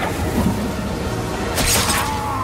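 Film action sound mix: a sharp crash about one and a half seconds in, over a dense, noisy background with music.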